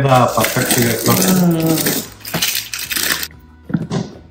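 A person talking for about two seconds over a steady hiss-like background, then a few sharp clicks near the end.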